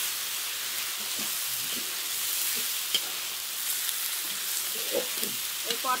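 Pointed gourds sizzling in hot oil and spice paste in a metal wok, with a steady frying hiss and a few light scrapes and clicks of a metal spatula turning them.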